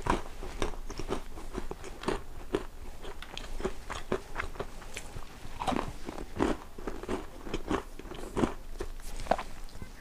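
A person chewing a crisp, crunchy chocolate-chip cookie close to a clip-on microphone, with irregular crunches throughout.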